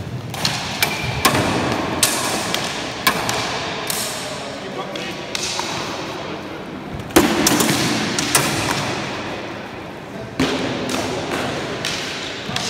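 Training swords modelled on the 1796 pattern heavy cavalry trooper's sword clashing and striking in sparring, mixed with footsteps thudding on a sports hall floor. A dozen or so sharp knocks, the loudest about seven seconds in, each ringing on in the echoing hall.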